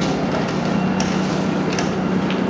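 Steady engine drone of a small aircraft in flight, heard from inside the cabin: a constant low hum over a wash of noise, with two brief ticks about a second in and near the end.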